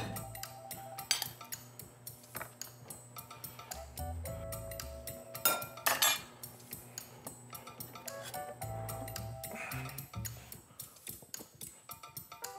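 Background music with held notes, over scattered clinks of utensils against a glass bowl and a plate, with a sharp pair of clinks about halfway through.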